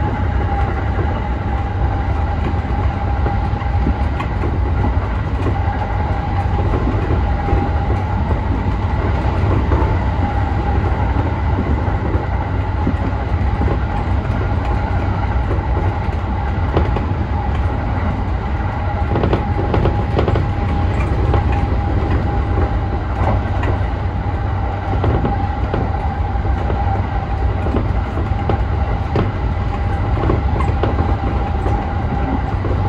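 E235-1000 series electric train running steadily at speed, heard from inside its front car. A constant low rumble carries a steady high tone, with scattered clicks of the wheels over rail joints.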